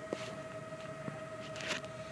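Quiet room tone with a steady high hum, broken by a couple of soft clicks and a brief rustle as the recording phone is handled and moved.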